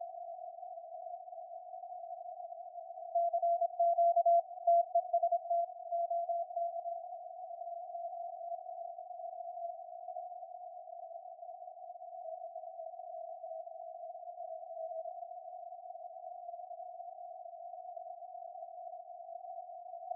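SunSDR2 DX transceiver's receiver audio on the 20-metre CW band: steady hiss through a narrow CW filter. A strong Morse code signal is keyed on and off from about three seconds in for a few seconds, with weaker Morse in the noise after it.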